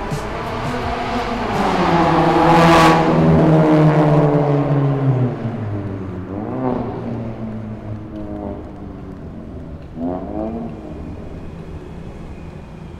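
A Mazda 3 hatchback drives past close by: its engine note and tyre noise swell as it approaches, peak about 2 to 4 seconds in, and drop in pitch as it goes by. Two shorter rises in engine note follow further off, near the middle and near the end, as it pulls away.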